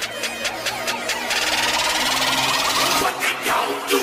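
Electronic logo-intro build-up: a quick run of pulses that speeds up and merges into a rising swell of noise, growing steadily louder, with a whoosh near the end.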